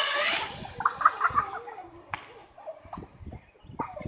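A child's loud laughter fades out in the first half second. Then come quieter children's voices calling out at a distance, with a few sharp knocks in between.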